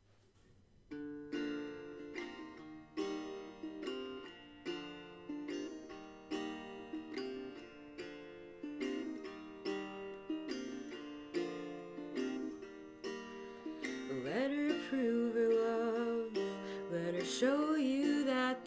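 Small travel guitar, capoed, fingerpicked in a slow repeating pattern that starts about a second in. A woman's singing voice comes in over it near the end.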